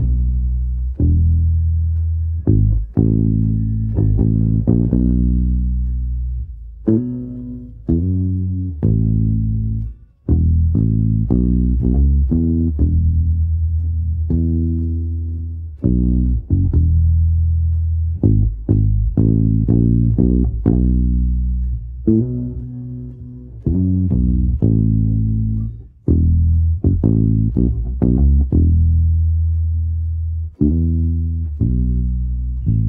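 Electric bass guitar playing alone as an isolated multitrack stem: a line of plucked low notes, some held and ringing out, others in quicker runs, with brief breaks about ten and twenty-six seconds in.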